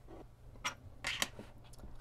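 A few light clicks and scuffs of small circuit boards being handled and set down on a tabletop, the loudest about two-thirds and one and a quarter seconds in, over a faint steady hum.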